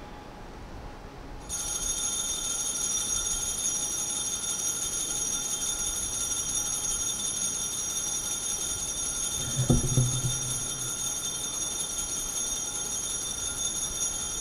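Altar bells ringing steadily for the elevation of the chalice at the consecration, starting about a second and a half in and stopping near the end. A short soft knock comes about two-thirds of the way through.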